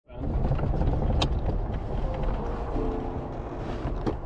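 Steady low rumble of a 1952 Alvis TA21 heard from inside its cabin while driving, with a single sharp click about a second in. Sustained music notes come in over it about two-thirds of the way through.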